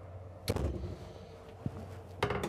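RV emergency egress window being swung shut: a sharp bang about half a second in as the frame closes against its seal, followed by a small click.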